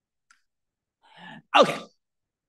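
Silence, then a man's short, audible in-breath through a lecture microphone, right before he says "Okay."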